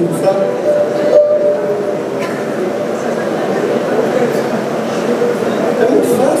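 Indistinct voices chattering in a large hall, with an accordion sounding a single held reed note for about a second near the start.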